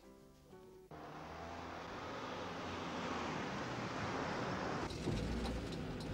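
A car driving, with engine and road noise heard from inside the cabin. It cuts in suddenly about a second in, after a moment of faint music, and grows steadily louder.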